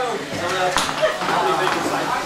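People talking in a room, with a brief sharp sound about three quarters of a second in.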